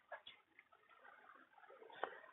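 Near silence: room tone, with a faint click or two just after the start.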